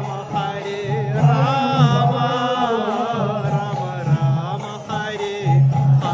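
Live kirtan: a lead singer chanting a devotional mantra in a wavering, ornamented melody over sustained instrumental accompaniment.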